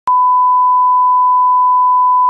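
A steady, loud test tone at a single unchanging pitch: the line-up reference tone played with colour bars, starting with a short click.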